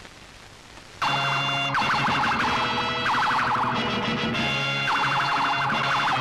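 Faint hiss, then about a second in a loud dramatic film score cuts in: held low chords under a high wailing figure that rises and falls again and again.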